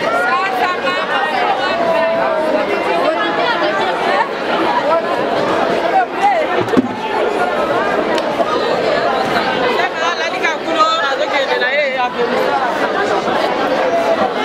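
Crowd chatter: many people talking at once, overlapping voices with no single clear speaker.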